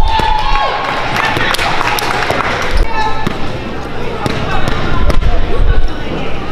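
A basketball bouncing with sharp thuds on a gym's hardwood floor during free throws, over spectators' voices and shouts echoing in the gymnasium.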